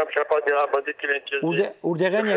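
Speech only: a voice talking over a narrow, phone-like line, with a lower man's voice coming in about a second and a half in.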